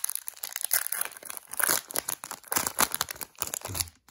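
A foil baseball-card pack wrapper being torn open and crinkled by hand: a dense, irregular run of sharp crackles.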